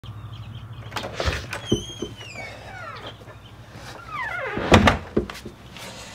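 Front door unlatched with two knocks, swinging open on a long creaking hinge, then another descending creak and a heavy thump as it is pulled shut about five seconds in.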